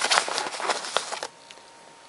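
Nylon fabric rustling and scraping as a hand rummages inside an Osprey Kestrel 38 hipbelt pocket. It is a quick, busy rustle that stops a little over a second in.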